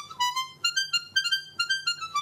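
Palm-sized miniature garmon (Russian button accordion) played in a quick tune of short, high-pitched reedy notes, about four a second.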